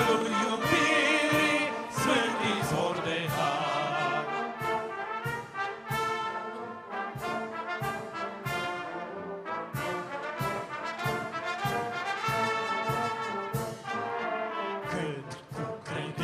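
Church brass band, trumpets and tubas, playing an instrumental passage of a hymn in a steady rhythm.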